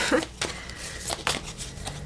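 Tarot cards being handled and drawn from the deck: a handful of short, soft clicks and slides of card against card.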